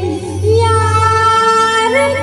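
A woman singing into a microphone over amplified accompaniment. A short wavering ornament comes first, then from about half a second in she holds one long steady note, over a steady low bass tone.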